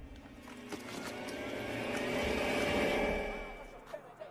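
A motor vehicle passing by: its engine note grows louder for about three seconds, then fades away.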